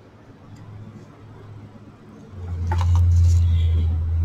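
Quiet at first, then about two seconds in a low rumble with a little light rustling: handling noise as craft materials are moved about on the table.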